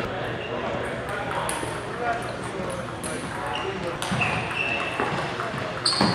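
Table tennis balls clicking off paddles and tables in a large, echoing hall, with short high squeaks of sneakers on the gym floor and indistinct chatter in the background.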